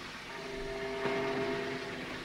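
A faint chord of several steady tones held together, starting shortly after the beginning and growing a little louder.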